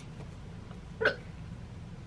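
A single short squeak-like voice sound about a second in, over a faint steady low hum.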